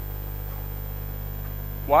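Steady electrical mains hum, a constant low drone with no other sound in it; a voice starts right at the end.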